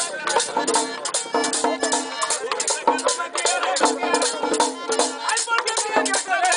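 A live merengue típico band plays: button accordion melody over a two-headed tambora drum, a scraped metal güira and congas, in a fast, steady beat.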